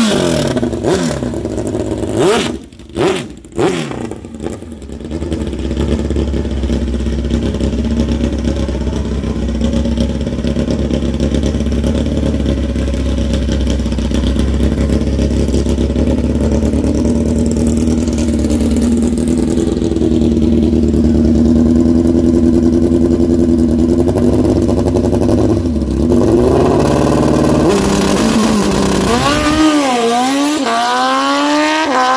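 Drag-racing motorcycle engine: a few sharp throttle blips, then a steady high idle while staging, then revs climbing quickly as it launches, with the pitch rising and dropping through gear changes near the end.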